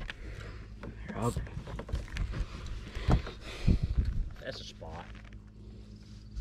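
Handling noises as a fish is unhooked in a landing net: two dull knocks about halfway through, with brief low speech before and after and a faint steady hum underneath.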